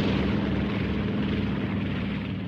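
Propeller airplane engine running steadily, a sound effect that slowly fades away.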